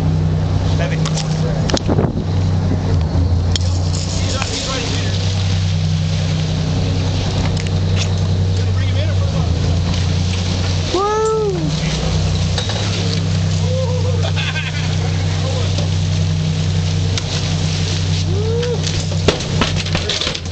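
Sportfishing boat's engine running steadily, with a few short rising-and-falling cries over it, the clearest about eleven seconds in.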